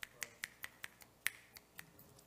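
A quick run of light, sharp clicks, about ten of them at roughly five a second.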